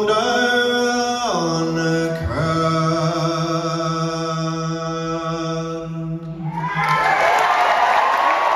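Solo male voice singing long held notes unaccompanied, stepping down in pitch twice early on, then holding a low final note. Audience cheering and applause break out about six and a half seconds in as the note ends.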